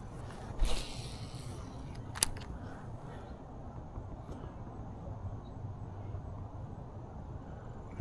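Handling noise from fishing tackle over a steady low outdoor background: a brief rustle with a soft thump about half a second in, then a single sharp click about two seconds in.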